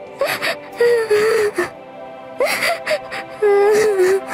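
A young woman's voice crying: about four wavering sobbing wails broken by sharp indrawn breaths, over sustained background music.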